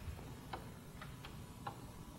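A few faint, irregular clicks, about four in two seconds, over quiet room noise.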